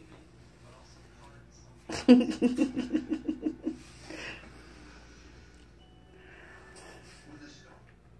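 A person laughing in a quick run of ha-ha pulses, beginning about two seconds in and lasting nearly two seconds, then a breath.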